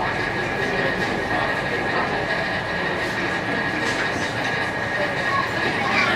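Coal forge running under forced air: a steady roar of the blown fire, with a steady high whine running through it. No hammer strikes yet.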